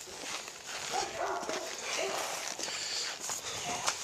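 Footsteps and the rustle of a jacket and the handheld camera while walking, with a few short, faint animal calls about one and two seconds in.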